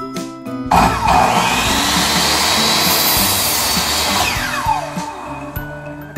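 Electric miter saw starts about a second in and cuts through a wooden fence picket, then its motor winds down with a falling whine. Background music plays underneath.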